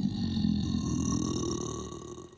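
An animated giant troll's deep, gravelly grunt, one long guttural vocal sound that fades out toward the end.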